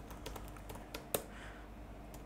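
Typing on a computer keyboard: a run of quiet key clicks, with one louder click a little over a second in.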